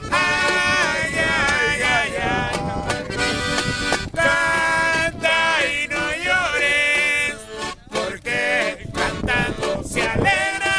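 Button accordion playing a Latin folk tune while men sing along loudly, with hand drums behind.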